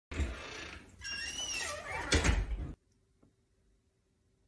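A door creaking open with a squealing creak that bends up and down in pitch, then cuts off suddenly a little before three seconds in.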